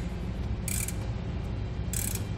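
Ratcheting wrench clicking in short bursts, twice, as it is swung back and forth to snug up the nut on a brake assembly mounting bolt, over a steady low hum.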